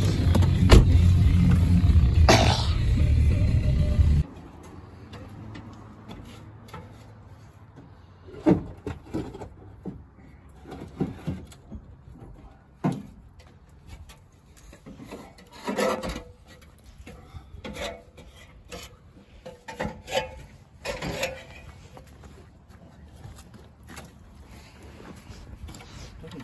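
A loud, steady low rumble that cuts off abruptly about four seconds in, followed by scattered short knocks and clanks from handling a metal basketball hoop rim on a ladder.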